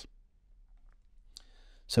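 Near silence, broken about one and a half seconds in by a single faint click, then a man's voice begins speaking near the end.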